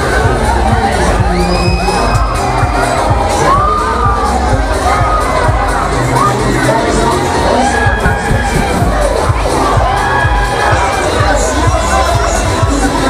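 Riders screaming on a Technical Park Loop Fighter fairground thrill ride as it swings them high, many overlapping rising and falling shrieks over a steady low rumble.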